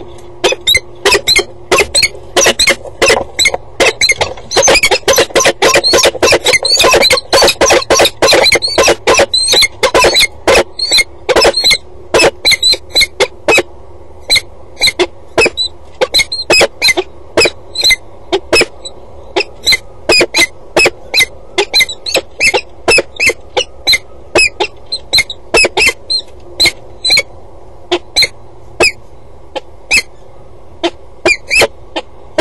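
Peregrine falcons calling at their nest box: a long run of short, sharp, high-pitched calls, many a second for the first dozen seconds and then slowing to one or two a second. A steady low hum runs underneath.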